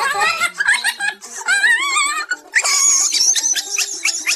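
A music track with a stepping tune, overlaid in the first half by high-pitched, wobbling, laughter-like voice sounds. From about halfway it turns to a quick run of sharp clicks over the tune.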